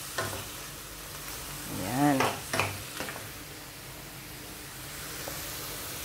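Shrimp frying in butter and garlic in a pan, a steady sizzle, with a few light clicks of a metal spoon stirring them.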